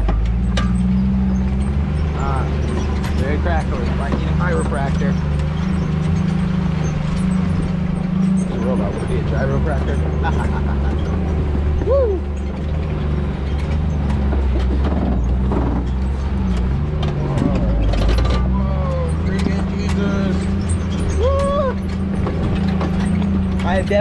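Off-road 4x4's engine running steadily at low speed as it crawls over a rocky trail, with scattered clicks and knocks from rocks and the chassis.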